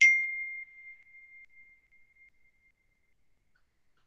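A single chime: one clear high note struck once, fading away over about two seconds.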